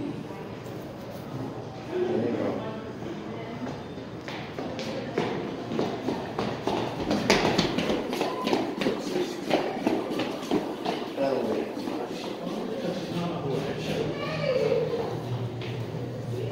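Ice hockey play in an arena: sharp clacks and taps of sticks and puck on the ice, thickest in the middle stretch, over the voices of spectators talking.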